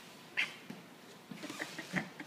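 Vizsla dog giving one brief high whine about half a second in, then light scuffs of claws on the hardwood floor near the end.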